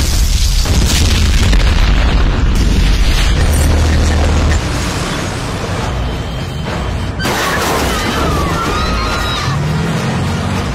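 A film explosion: a sudden, deep boom that rumbles on for about four and a half seconds, mixed with a dramatic music score. Later the mix thins and high gliding squeals come through near the end.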